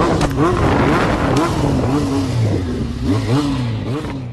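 Motorcycle engine running with wind rushing over the on-board camera's microphone, the engine pitch repeatedly rising and falling.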